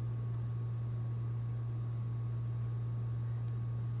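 Room tone: a steady low hum with faint hiss, unchanging throughout, and no distinct sound events.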